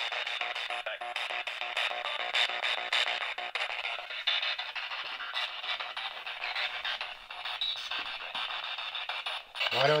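Spirit box sweeping through radio stations: thin, tinny fragments of broadcast music and voices through a small speaker, chopped several times a second.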